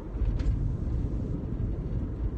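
Steady low rumble of a car's engine and road noise heard inside the cabin, with a faint click about half a second in.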